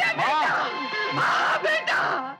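A woman crying out and wailing in distress, her voice rising and falling, over background film music with steady held tones.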